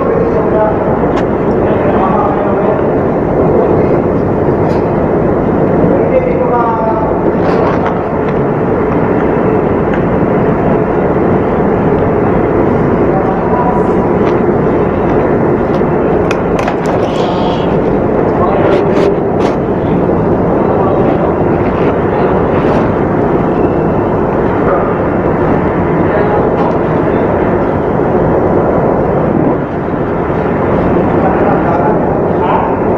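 Loud, steady machinery drone in a ship's pump room, with muffled voices near the start and a few light clicks in the middle.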